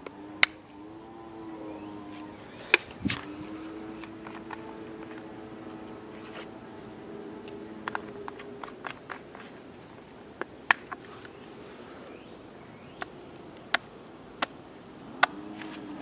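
Scattered sharp clicks and taps from a squeeze bottle of polishing compound being handled and dabbed onto a foam polishing pad. Under them, in the first half, a steady pitched hum of unknown source runs for about two seconds, breaks, then holds for about five more seconds before fading.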